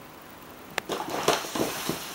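A cat running across a wooden floor and crashing into cardboard boxes: a sharp knock a little under a second in, then about a second of scuffing and scraping as the boxes slide along the floor with the cat in them.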